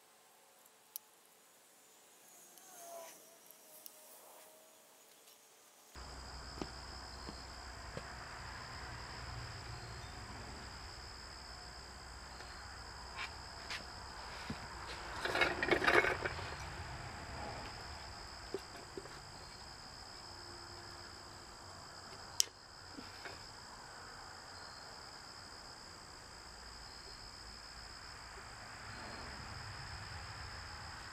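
Metal clinking and scraping as a Kohler engine's side plate is worked off the crankshaft, loudest briefly about halfway through, with a few sharp clicks. Under it runs a faint, steady high-pitched whine, and the first few seconds are near silent.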